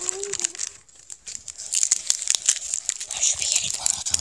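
Foil Pokémon booster pack wrapper being torn open and crinkled by hand: a dense run of crackling that starts about a second in and keeps going.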